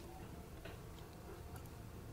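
A pause between speakers: faint steady background hiss with a few faint ticks.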